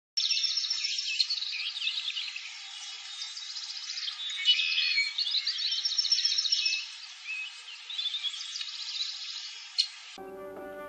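A chorus of many small birds chirping, whistling and trilling at once, dense and overlapping throughout.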